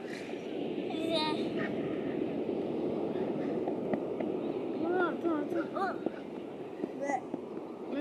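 Steady rushing beach ambience. A young girl's high voice calls out briefly about a second in, and makes a few short high-pitched sounds around five to six seconds in.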